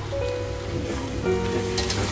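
Hot butter and olive oil sizzling in a wok, the hiss growing louder about a second in as whole shrimp are tipped into the garlic. Background music with steady held notes plays throughout.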